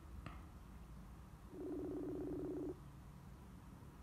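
Outgoing-call ringback tone from a smartphone's speaker during a Facebook Messenger call that is still "Calling...": one low, buzzing ring about a second long, near the middle. The call is still unanswered.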